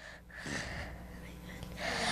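A child drawing a breath close to a handheld microphone: a soft, hissy intake lasting about a second and a half.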